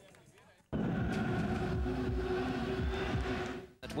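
Outdoor course-side noise with a deep rumble, starting suddenly about a second in and cut off abruptly just before the end.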